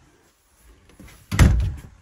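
A door shutting with a single heavy thud about one and a half seconds in.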